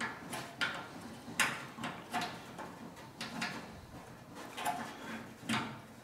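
Small steel captive-nut plate and locking pliers being handled and worked against a sheet-steel panel: scattered, irregular light metallic clicks and knocks.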